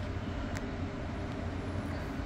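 Steady low background hum of room noise, with one faint click about half a second in.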